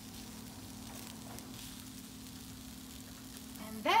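Asparagus, red onion and cherry tomatoes sizzling in a frying pan, a faint steady hiss, over a steady low hum.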